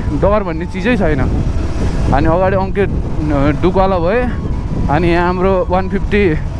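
A person talking in phrases over the steady low rumble of a motorcycle on the move.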